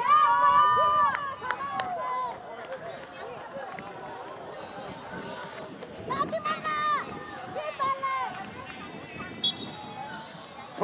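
Spectators shouting at a youth football match: long, high-pitched calls near the start and again around six to eight seconds in, over a low background of crowd noise, with a few short knocks.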